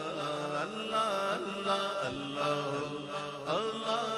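A naat sung live by a lead male voice through a microphone, over a chorus of men chanting a sustained backing in held notes.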